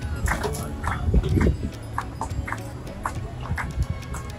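Van driving slowly on a dirt road, a steady low engine and road rumble. Over it come repeated short, sharp, pitched calls, one every half second to a second.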